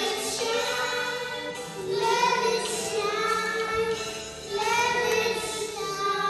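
A group of voices singing a slow hymn together, in long held phrases.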